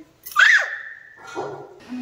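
A short, high-pitched vocal cry about half a second in, sweeping sharply up in pitch and straight back down.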